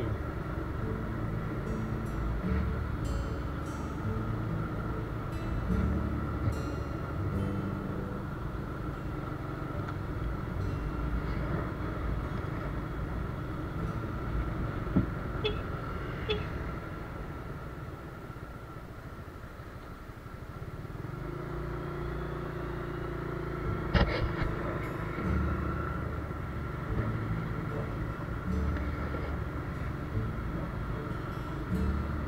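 Motorbike riding along a road: a steady engine hum mixed with wind and road noise. It eases off about two-thirds of the way through, then picks up again, with a few sharp clicks along the way.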